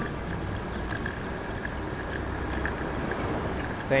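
Steady wind and road rumble while riding a Ninebot electric scooter through street traffic, with a faint steady high tone running under it.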